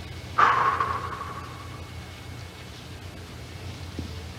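A single sudden crash about half a second in that rings away over a second and a half, over a steady low hum.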